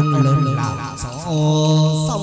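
Hát văn (chầu văn) ritual singing: one singer holding long, low notes that bend and slide in pitch, in a chant-like style over a plucked-string accompaniment.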